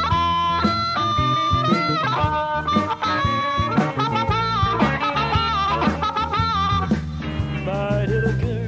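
Electric blues band playing an instrumental passage: a blues harmonica leads with held and bent notes over bass guitar, drums and electric guitar.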